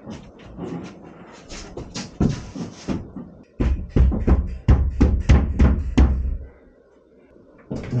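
Scraping and rustling, then a quick run of about ten hard knocks, some four a second, as something is struck to force it into place behind the wall panels.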